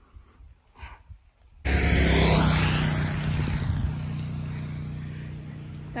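Light propeller aircraft engine passing close by: it comes in suddenly and loud about one and a half seconds in with a steady low drone, then slowly fades away.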